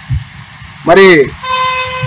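A vehicle horn gives one steady, held honk starting about a second and a half in, just after a brief word from a man.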